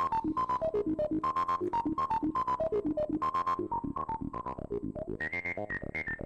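Sequenced analog synth: a PM Foundations 8080 VCO (an SEM Tribute oscillator) played through a PM Foundations 3320 VCF, a CEM3320-based filter, with a sequencer stepping the notes, the cutoff and the resonance. It plays a rapid run of short notes, about eight a second, each with a resonant, vowel-like peak that jumps from note to note. Near the end the resonant peak moves higher and the notes get a little quieter.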